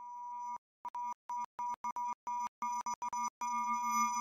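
Electronic logo sting of a synthesized tone chord. It swells in briefly, then stutters on and off in a string of short beeps of the same pitch, and holds for a longer stretch near the end.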